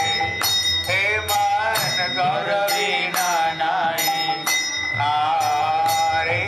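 Devotional kirtan singing: one voice carrying a slow, ornamented melody, with small hand cymbals (kartals) struck steadily about twice a second and ringing between strokes.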